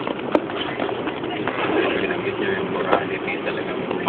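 Steady road and engine noise heard from inside a car, with indistinct voices in the background and two sharp clicks, one just after the start and one about three seconds in.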